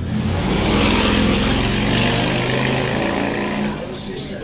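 Applause with cheering from a State of the Union audience, heard through a television's speaker. It swells up right after the end of a spoken line and eases near the end.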